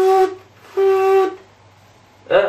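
A man's voice humming or droning two short, steady notes at the same pitch, the second a little longer, mimicking the sound of an RC car motor.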